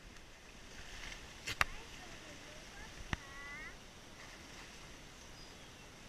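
Two sharp knocks about a second and a half apart, the first the louder, followed right after the second by a short rising voice-like cry.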